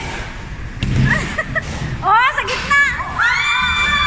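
Women shouting and squealing excitedly as a bowling ball is bowled, ending in one long high-pitched shriek. A low thud comes about a second in.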